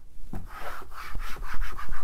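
Whiteboard eraser rubbing dry-erase marker off a whiteboard in quick back-and-forth strokes, starting about half a second in.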